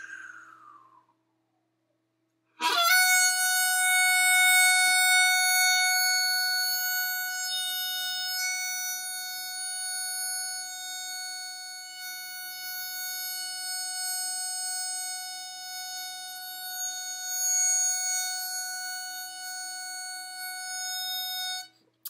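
A-key diatonic harmonica playing a single draw note on hole 6 (F-sharp), starting about two and a half seconds in. The note is held at a steady pitch on one long inhale for about nineteen seconds, then stops just before the end.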